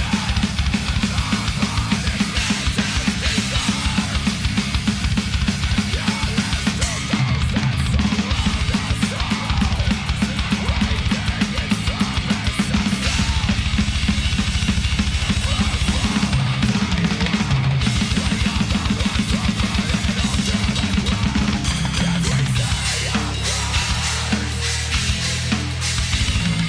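Heavy metal drum playthrough: a drum kit played fast and tight, with rapid double-bass kick drum under snare and cymbals, and drum fills accented with splash cymbals, played along with the song.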